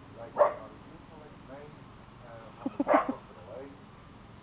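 Dog barking: one loud bark about half a second in, then a quick run of short low woofs ending in a loud bark about three seconds in.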